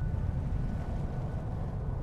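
A low, steady rumble of documentary sound design, with a faint thin high tone held through most of it.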